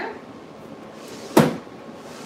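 One sharp knock a little past halfway through, from something hard being handled at a work counter.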